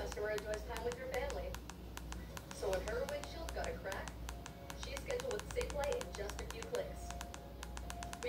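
Rapid clicking, several clicks a second and thickest in the middle, from TV remote-control buttons being pressed to scroll a satellite TV channel guide, with bursts of a high-pitched voice talking over it.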